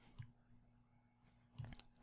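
Near silence with a few faint computer mouse clicks, one about a quarter second in and a short cluster near the end, as cells are clicked and a range is selected.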